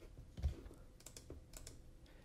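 A few faint, scattered clicks from a computer keyboard and mouse over quiet room tone.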